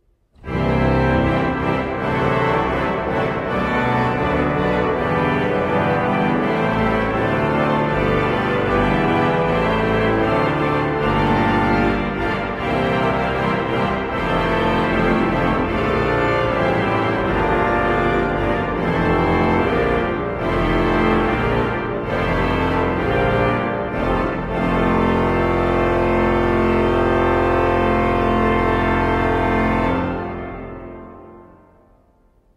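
1917 Eskil Lundén pipe organ played on its reed stops, the trumpet 16 ft with the octave coupler, sounding as a full set of reeds at 16, 8 and 4 ft. A passage of loud chords starts about half a second in and ends on a long held chord over the last five seconds.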